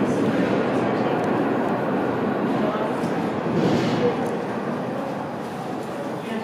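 Cable-hauled funicular car rolling away uphill on its rails: a dense, steady rumble that gradually fades, with voices in the background.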